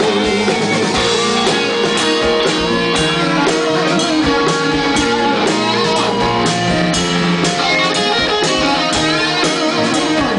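A live rock band plays an instrumental stretch on electric guitars, bass and drum kit, with a steady beat of about two drum hits a second under held guitar notes.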